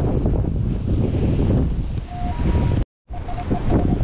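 Wind buffeting the microphone with a steady low rumble. About two seconds in, a metal detector gives a short target signal, a lower beep rising to a higher one, and after a brief dropout it sounds a run of short, lower beeps near the end, signalling a buried coin.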